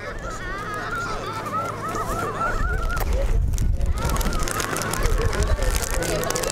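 A flock of waterbirds honking over and over in quick, wavering calls, with a short break about three seconds in.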